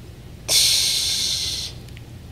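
A man exhaling hard through his teeth close to the microphone: a sudden hiss that lasts just over a second.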